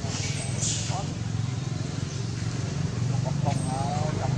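Indistinct voices of people talking in the background over a steady low rumble, the voices becoming clearer near the end.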